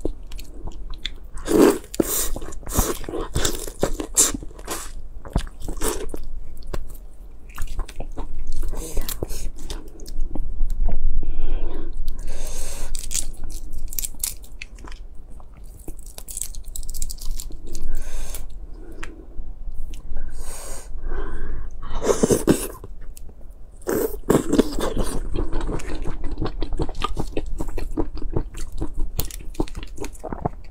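Close-miked eating sounds of large red shrimp: shells cracked and peeled by hand, with crunching and wet chewing, in a dense string of sharp crackles and clicks.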